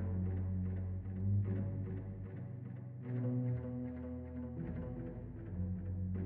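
Synth bass line from a Korg Volca Keys played through Reflectosaurus, a modular delay plugin. It gives low sustained notes that change pitch a few times, with a quick, even pulse running over them.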